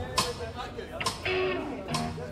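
Electric guitar starting up, with sharp clicks at an even slow beat of a little under one a second, over people talking.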